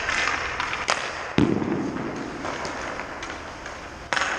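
Hockey skate blades scraping on rink ice. About a second in comes a sharp crack of stick on puck, and half a second later a loud thud that rings on in the arena's echo.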